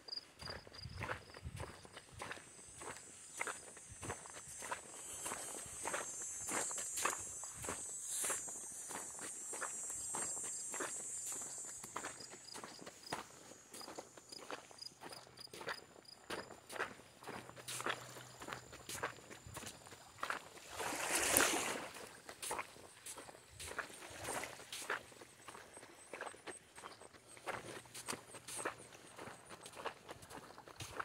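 Footsteps of a person walking on sand and pebbles, at a steady pace of about two steps a second. For the first dozen seconds a high steady buzz runs underneath. About 21 seconds in, a brief louder rushing noise lasting about a second is the loudest sound.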